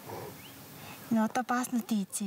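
Low background noise, then from about a second in a person's voice in a quick run of short syllables.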